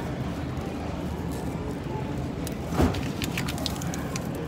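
Steady supermarket background hum, with a brief rustle and a few light clicks a little under three seconds in as a bunch of beets is handled.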